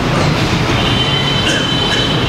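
Loud, steady crowd noise from the gathered audience, with a faint high steady tone over it from about a second in.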